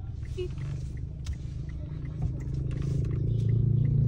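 Engine drone of a Mitsubishi Xpander's 1.5-litre four-cylinder heard inside the cabin as the car moves under throttle. It is a steady low hum that grows louder over the last two seconds.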